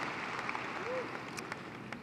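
Large crowd applauding and cheering, fading away.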